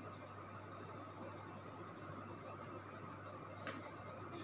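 Faint, steady sizzle of samosas deep-frying in hot oil in a steel kadhai, with a faint high ticking about twice a second and a soft click near the end.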